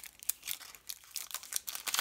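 Plastic trading-card booster wrapper crinkling as it is torn open by hand: a quick run of irregular crackles.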